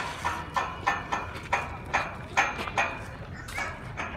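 Footsteps on stone and marble paving at a walking pace, about two sharp steps a second.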